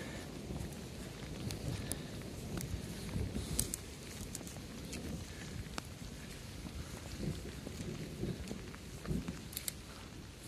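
Footsteps of hikers walking through grass and brush on a hillside path, irregular soft thuds with rustling and handling noise, and scattered small ticks throughout.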